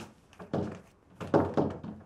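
A wooden door being opened on someone standing right behind it, with two dull thunks, the second, about a second and a half in, the louder.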